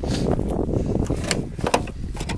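A C3 Corvette door being tried and failing to open: three sharp clicks or knocks from the door and its latch, the last and loudest near the end, over a steady low rumble.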